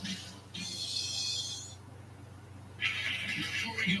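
Television programme sound playing in the room: a brief high, hissy sound about half a second in, a short lull, then the programme's voices coming back near the end.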